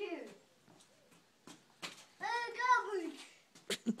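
A toddler's high-pitched wordless vocalizing: a short falling sound at the start, then a drawn-out two-part call a bit past two seconds in. A few sharp clicks and knocks fall around it.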